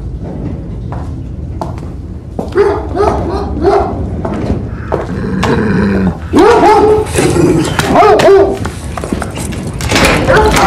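Guard dog barking repeatedly, starting about two and a half seconds in, with a snarl just past the middle and the loudest barks in the second half, over a low steady rumble.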